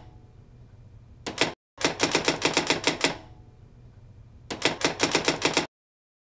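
Typewriter keystroke sound effect: rapid, evenly spaced clacks at about eight a second, in three runs. There is a short run about a second in, a longer one from about two to three seconds, and a last one starting about four and a half seconds in that cuts off near the end.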